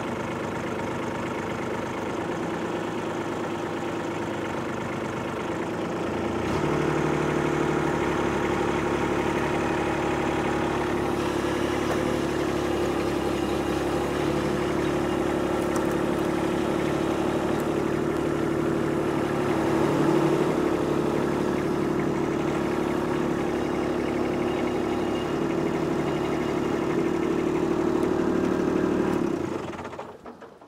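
Kubota B2601 compact tractor's three-cylinder diesel engine running while its front loader lifts a log. About six seconds in the engine speeds up and gets louder, runs steadily at that speed, then cuts off near the end.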